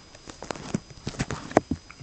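Handling noise: a quick run of light taps and knocks, the loudest about one and a half seconds in.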